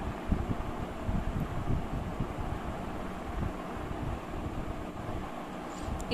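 Steady background hiss with irregular low rumbling gusts, like air buffeting the microphone.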